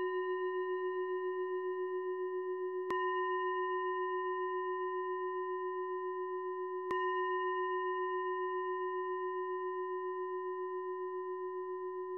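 Meditation bell, like a singing bowl, struck twice about four seconds apart, over the long ringing of a strike just before. Each stroke rings on and slowly fades. Struck to close the session.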